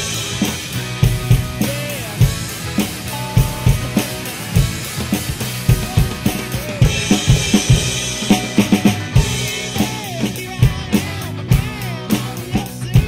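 Acoustic drum kit playing a steady rock groove, kick and snare hits with cymbals, over a recorded rock song. The cymbal wash grows brighter for a few seconds from about seven seconds in.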